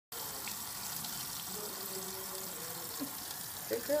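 Water running steadily from a faucet into a stainless steel sink.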